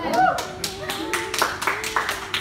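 Hand clapping from a few people, quick separate claps about four or five a second, with voices calling out over it.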